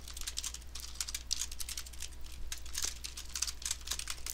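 Computer keyboard typing: a steady run of individual key clicks, several a second.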